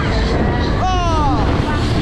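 Void fairground ride running with a loud, steady low rumble, and a high-pitched scream sliding down in pitch about a second in.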